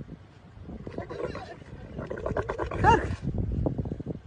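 Dromedary camel growling with a rough, gurgling rumble as a rider climbs onto it while it kneels, rising to a louder bellow about three seconds in.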